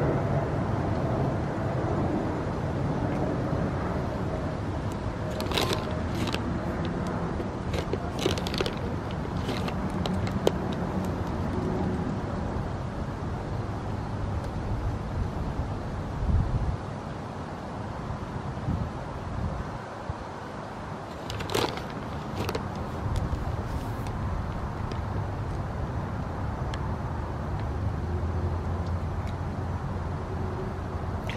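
Steady low outdoor rumble like distant road traffic, with a few short, sharp clicks now and then.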